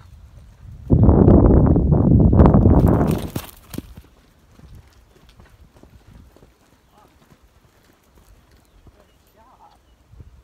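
A Tennessee Walking Horse cantering, its hoofbeats heard, with a loud rush of noise about a second in that lasts roughly two and a half seconds before the hoof falls go on more quietly.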